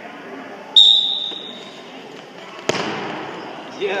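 A referee's whistle gives one short, loud blast about a second in, signalling the wrestlers to start from the referee's position. A sharp thud on the wrestling mat follows over halfway through, with voices in the gym behind.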